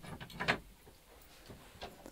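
A few light wooden knocks and clicks in the first half second, then a couple of faint taps: wooden bow sticks being handled on a wall rack.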